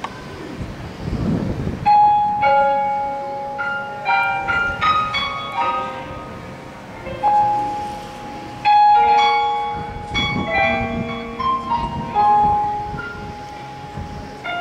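Piano introduction to a song: single notes and chords struck and left to ring, entering about two seconds in and building phrase by phrase. A low rumble sounds briefly near the start and again about ten seconds in.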